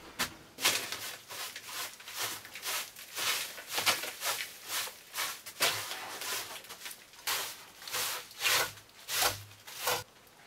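A hand brush sweeping over wooden boards in quick, repeated strokes of about two a second, brushing dust and debris off a plank table and shelf.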